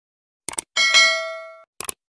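Subscribe-animation sound effects: a short mouse-click about half a second in, then a bright bell ding that rings out and fades over most of a second, then another click near the end.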